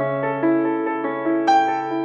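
Background music: a slow, soft piano piece, single notes struck and left to ring over a held low note.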